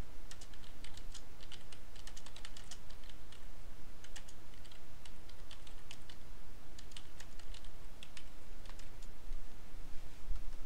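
Typing on a computer keyboard: quick runs of keystroke clicks, broken by short pauses.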